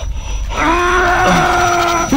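A man's long, drawn-out cry held at one steady pitch, starting about half a second in: a wail of anguish from a climber trapped under a boulder.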